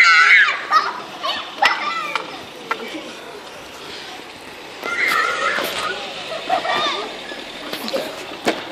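Children shouting and yelling, with a loud, high-pitched wavering yell at the start and more shouts about five seconds in, with a few sharp knocks in between.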